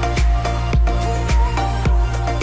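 Electro house music: a steady kick drum at just under two beats a second, with lighter hits between the kicks, under sustained synth notes.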